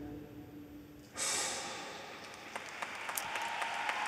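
The last held chord of the skating music fades out. About a second in, arena audience applause breaks out suddenly and slowly dies away, with scattered single claps near the end.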